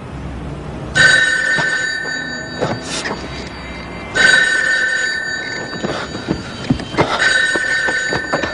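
Corded landline telephone ringing: three rings about three seconds apart, each lasting about two seconds.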